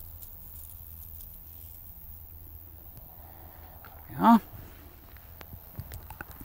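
Quiet outdoor background: a steady low rumble with a few faint rustles and clicks of dry grass stems being handled. One spoken word about four seconds in.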